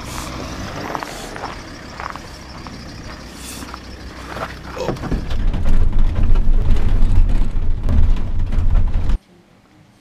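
A van pulls up on a snowy road with its engine running. From about halfway in, a loud, deep rumble of the engine and road is heard from inside the moving cabin, and it cuts off suddenly near the end.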